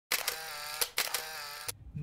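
Intro sound effects: several sharp clicks over a steady pitched tone, ending with a last click near the end.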